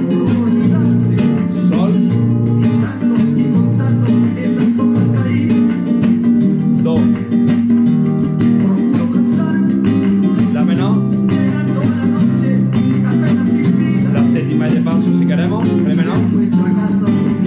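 Spanish guitar built by Manuel Ordóñez, capoed, strummed in a steady Latin rhythm through a minor-key chord progression (A minor, D minor, G, C), with the bass note changing every second or two.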